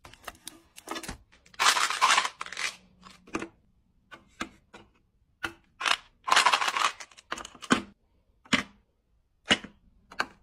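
Plastic chewing-gum bottles and small cardboard gum packs being set down into clear plastic drawer organizer bins: a string of sharp clicks and taps, with two longer bursts of packaging rustling, about two seconds in and again near the middle.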